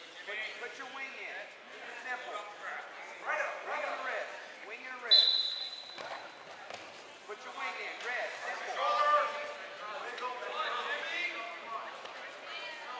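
Referee's whistle blown once, a sharp, steady high note of about a second, some five seconds in, restarting the wrestling bout; coaches and spectators shout around it.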